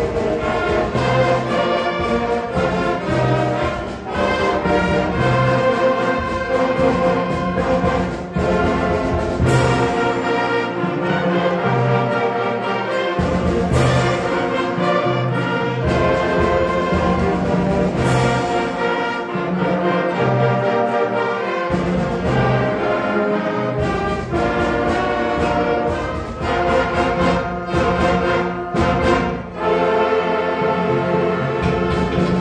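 A middle school concert band playing a full-band piece, with brass to the fore over a pulsing bass line. Three sharp accented hits ring out near the middle.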